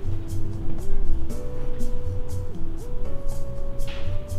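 Background music: a smooth melody of long held notes stepping from pitch to pitch over a steady beat with light regular ticks.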